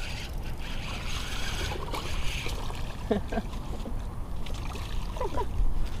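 Wind rumbling on the microphone, with a small fish splashing in the shallows as it is reeled to the bank.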